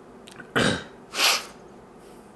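A man clearing his throat: two short, rough bursts about half a second apart, the second one higher and hissier.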